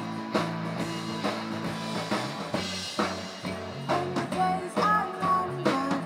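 Indie rock band playing live: a drum kit keeps a steady beat under sustained electric guitar and bass notes. A woman's singing voice comes in over the band in the last couple of seconds.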